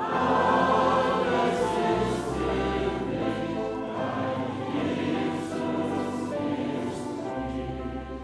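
A choir singing a hymn, several voices holding sustained chords, growing softer toward the end.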